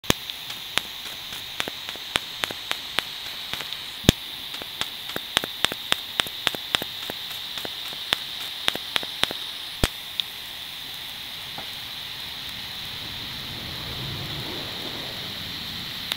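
TIG welding arc: a steady hiss with irregular sharp crackles, which are dense at first and thin out after about ten seconds.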